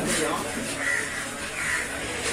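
Fish-market ambience with background voices and crows cawing twice. There is a single knock of the knife on the wooden chopping block right at the start.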